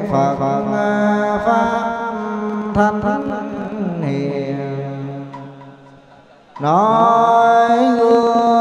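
Vietnamese Buddhist monks chanting a liturgy through a handheld microphone, in long, held, sliding notes. The phrase dies away about five seconds in, and a new one begins with a rising glide about a second and a half later.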